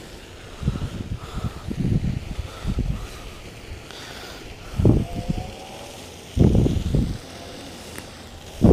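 Wind buffeting a wearable camera's microphone in irregular low gusts, five or six of them, the strongest about five seconds in and near the end.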